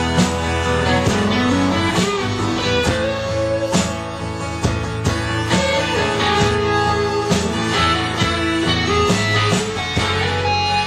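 Instrumental break of a live folk-rock song: guitar strummed in a steady rhythm under a sustained lead melody whose notes slide up in pitch about a second in.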